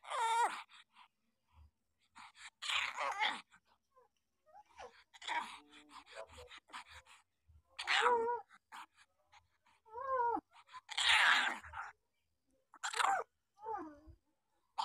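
Week-old puppies whimpering and squealing in short, mostly falling cries. The cries come every second or two, with rougher, noisier grunting bursts between them.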